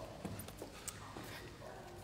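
A few faint footsteps and light knocks against quiet room tone.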